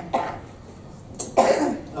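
A person coughing: a short burst just after the start and another about a second and a half in.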